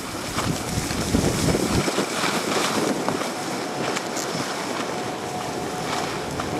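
Snowblades sliding and scraping over packed snow, with wind buffeting the microphone. The low rumble of the wind drops out about two seconds in.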